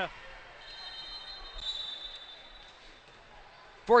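Faint indoor gym ambience between volleyball rallies, with a ball bouncing on the hard court floor. A faint, high, steady whine runs for about two seconds from early on.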